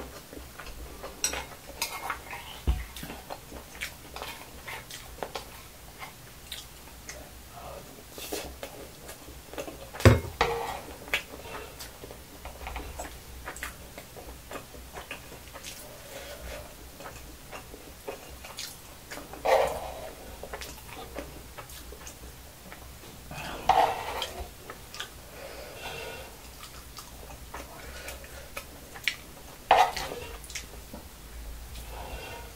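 Metal spoon scraping and clinking against the cooker's nonstick pan as fried rice is scooped up. Scattered small clicks run throughout, with one sharp knock about a third of the way in and louder scraping bursts about two-thirds of the way through and near the end.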